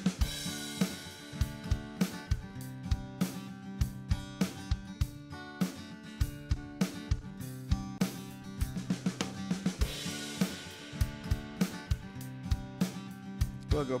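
GarageBand's virtual Drummer playing a rock beat of kick, snare and hi-hat in steady time over a guitar track, with the hi-hat part set to a trial setting. A brighter cymbal wash comes in around ten seconds in.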